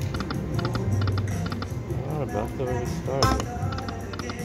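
Aristocrat Lightning Link 'Best Bet' slot machine spinning its reels: electronic game music with runs of quick clicking ticks as the reels run and stop. A louder sweep comes a little after three seconds.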